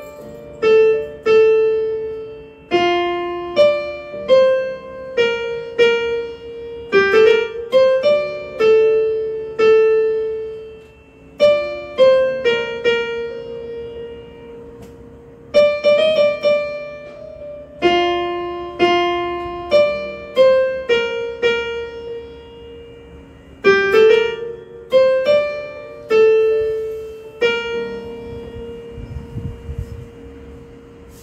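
Electronic keyboard on a piano voice playing a slow melody, mostly one note at a time with a few low notes under it, each note struck and left to fade. The tune falls into phrases, with longer held, fading notes about halfway through and near the end.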